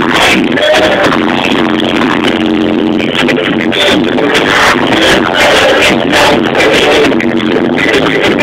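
Live Latin pop band playing through a concert sound system, recorded from the crowd: loud, muffled music with a steady drum beat.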